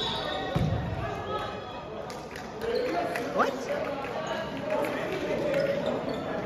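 A basketball bouncing on a gymnasium's hardwood floor, with the voices of players and spectators talking throughout and a short rising squeak about three and a half seconds in.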